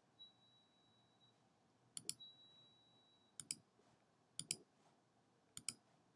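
Computer mouse clicking, faint against near silence: four quick double clicks, each a button press and release, spaced about a second apart. A faint high-pitched whine sounds through the first half.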